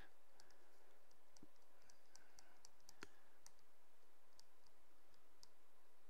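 Faint, scattered small clicks over a low steady hiss, with one sharper click about three seconds in.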